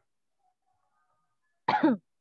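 A single short cough near the end, after a silent stretch.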